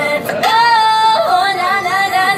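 Female pop vocalists singing live through handheld microphones and a loudspeaker, with backing music; one voice holds a long high note for about a second, then breaks into quick runs of notes.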